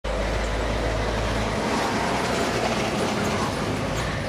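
Steady vehicle noise: a deep rumble that drops away about a second and a half in, over an even hiss.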